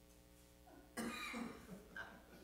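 A single cough about a second in, sudden and sharp at the start and trailing off, after a second of faint steady room hum.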